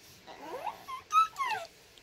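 A small child's high-pitched vocal squeaks and whines: a rising squeal, then a few short squeaks and a falling whine in the second half.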